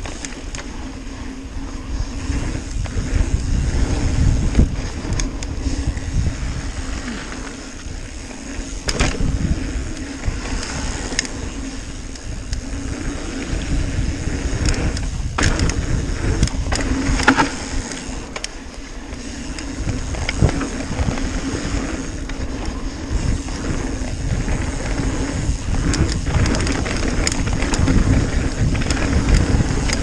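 Mountain bike rolling fast down a dirt trail: tyres running over the dirt and the bike rattling, with heavy wind rumble on the camera microphone. Sharp knocks and clatters come through several times as the bike hits bumps and roots.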